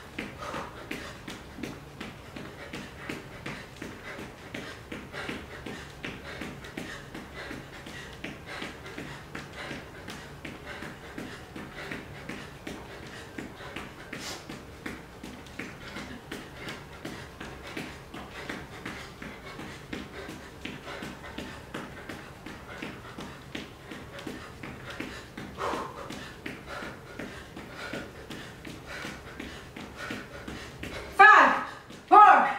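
Sneakers landing on a yoga mat in a quick, steady rhythm as a person jogs in place with high knees, with hard breathing from the effort.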